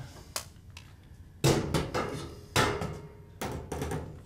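Knocks and scrapes of a T8 LED tube being handled and fitted against a metal fluorescent fixture: a light click early, then a run of sharp knocks and scraping from about a second and a half in.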